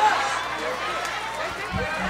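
Faint voices of a church congregation murmuring in a pause of the preaching, over a steady low hum from the sound system.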